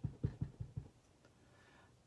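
A rubber stamp tapped several times in quick succession on an ink pad as it is inked, soft dull taps that stop after about a second.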